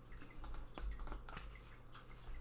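Tarot cards handled on a wooden table: a few faint light clicks and soft knocks as the cards are picked up and moved.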